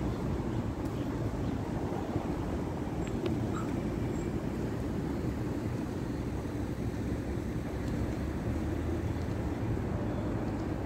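Steady low rumble of city street traffic, with no single event standing out.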